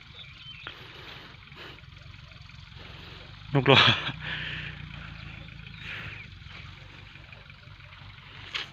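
Farm tractor engine running with a steady low drone. A man laughs briefly about three and a half seconds in.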